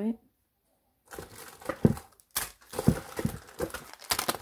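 Clear plastic packets crinkling and rustling as they are handled, in irregular bursts that start about a second in.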